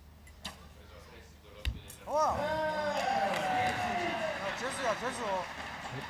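A recurve bow shot, heard as a sharp thump a little under two seconds in, then several voices shouting and cheering with calls that swoop up and down, one held for more than a second.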